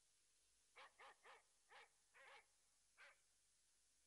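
A dog barking: six short, faint barks in quick succession, then it stops.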